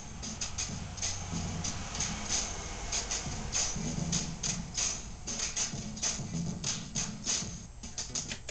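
An unmixed, drum-loop-based beat playing straight from a keyboard workstation: a quick run of sharp, hissy percussive hits over a low bass line.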